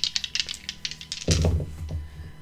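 Small zodiac dice clattering in a rapid run of light clicks as they are rolled onto a mouse pad, then a low thump about a second and a half in.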